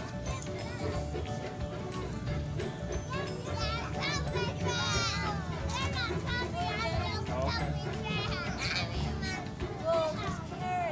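Young children chattering and calling out, with high-pitched shouts about halfway through and again near the end, over background music.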